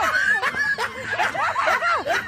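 A group of women laughing together, several voices overlapping.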